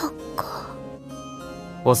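Soft background music with steady sustained notes, with a girl's short, breathy vocal sounds near the start and about half a second in; a young man's voice begins speaking near the end.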